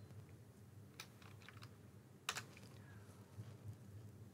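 A few quiet computer keyboard keystrokes: a single click about a second in, some faint ones just after, and a louder cluster a little past two seconds, over a faint low hum.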